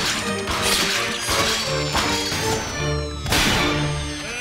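Dramatic orchestral score over cartoon sound effects of a powered armor's hydraulic hoses being ripped out, spraying fluid. There are about four short, noisy bursts, and the loudest comes about three seconds in, as the suit loses power.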